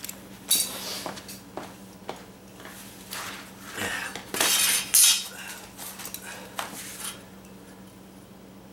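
Steel carpenter's square clinking and scraping as it is picked up, moved and set down on a vinyl linoleum remnant over a concrete floor, a run of separate knocks and scrapes with the loudest, longest scrape about five seconds in.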